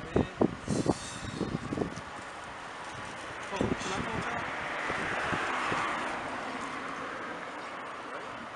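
Indistinct voices talking at the car window in the first half, then an even rushing noise that swells for a few seconds and eases off.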